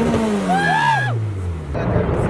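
Turbocharged Honda del Sol drag car's engine running at a steady pitch, then falling away over about a second. A short laugh or call sounds over it about half a second in, and the sound changes abruptly near the end.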